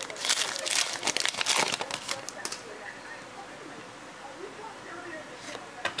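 Foil wrapper of a trading card pack being torn open and crinkled. The crackling is loudest for the first two and a half seconds, then gives way to quieter handling.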